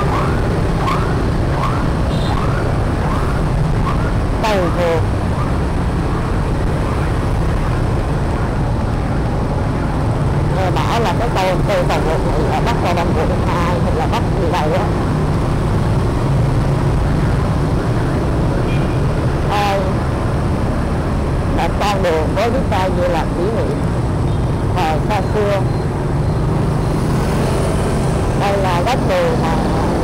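Steady engine and road rumble from a motorbike riding through dense city traffic of scooters and buses, with scattered clicks and knocks along the way.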